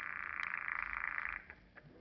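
An electric buzzer standing in for a telephone ringing, as a radio sound effect. It buzzes once for about a second and a half, then stops.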